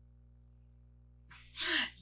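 Near silence with a faint steady hum, then about a second and a half in a woman's short, sharp breathy scoff.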